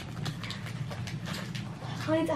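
Wrapping paper and gift packaging crinkling and rustling as small presents are handled and unwrapped, giving irregular light crackles over a low steady room hum.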